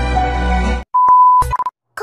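Background music cuts off abruptly just under a second in. A steady, high electronic beep of about half a second follows, then a short second beep.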